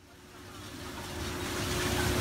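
American Pulverizer TRS Series 72 x 72 slow-speed shear-type shredder running. It makes a steady mechanical rumble and hum with a faint held tone, fading up from silence and growing steadily louder.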